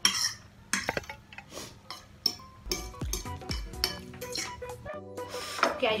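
A metal fork scraping and clinking against a plate as the last noodles are gathered up: a run of sharp clinks and scrapes, with a few dull knocks about halfway through.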